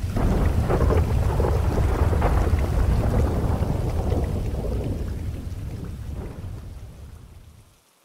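A long rumble of thunder with rain, swelling in and then fading away near the end.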